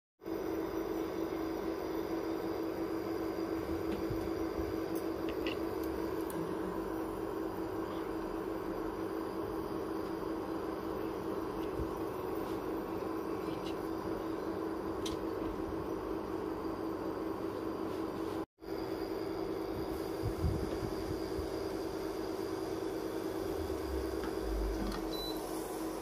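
A steady machine hum with a constant low tone, cutting out for a moment a little after halfway, with a few faint clicks.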